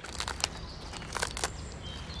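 Chef's knife cutting into the core of a head of lettuce on a wooden board: a few short, crisp crunches and leaf rustles.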